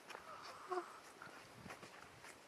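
Footsteps on a dirt hiking trail, faint, with one brief pitched vocal sound about a third of the way in.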